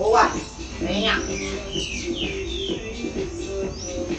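Background electronic workout music with a steady beat, with a few short voice-like pitch glides over it, the loudest just after the start.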